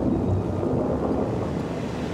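Steady low wind and storm noise with the drone of a single-engine propeller plane beneath it.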